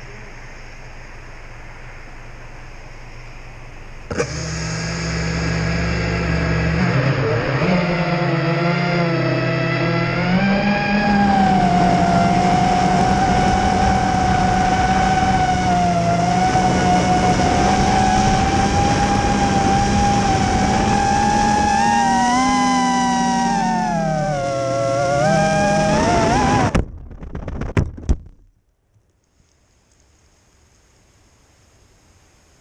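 5-inch FPV quadcopter's motors and propellers whining in flight, picked up by the onboard GoPro. The pitch rises and falls with throttle and comes on suddenly a few seconds in over a steady rushing background. Near the end the whine cuts off abruptly, with a couple of sharp knocks.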